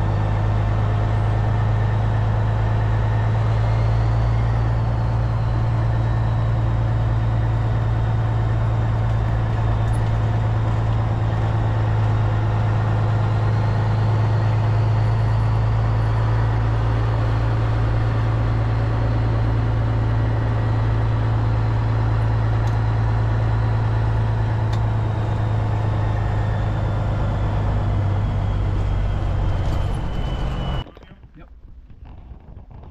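Peterbilt semi-truck's diesel engine running steadily while driving, heard from inside the cab as a deep, even drone with road noise. A faint high whine rises and falls a couple of times.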